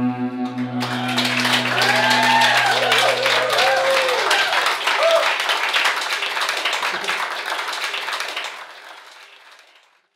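A final guitar chord rings out and dies away while a small audience in a room breaks into applause about a second in, with cheers and whoops over the clapping. The applause fades out near the end.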